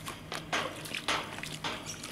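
A stick slapping and tapping the surface of pond water, giving a handful of short, light splashes and taps.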